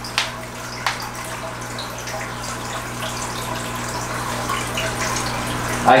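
Water trickling and splashing in a home aquarium over a steady low hum, with a couple of light clicks in the first second as a fish is netted into the tank.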